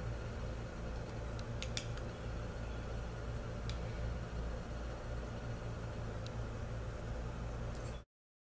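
Steady low hum of room background noise, with a few faint clicks about two seconds in and again near four seconds.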